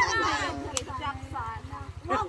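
Voices of a group of people calling out and chattering, with one sharp click a little before the middle.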